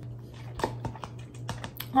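A series of light, sharp clicks and taps, about half a dozen spread over the second half, over a steady low hum.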